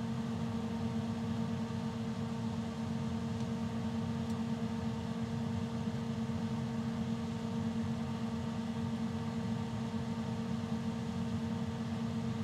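Cessna 182 avionics and electrical equipment humming steadily just after the master and avionics switches are switched on, with the G1000 displays booting: one steady low tone with a fainter overtone above it.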